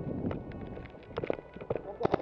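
Scuffling movement and gear rustle, then a few sharp pops in the second half from a Tippmann 98 Custom Pro paintball marker firing close by.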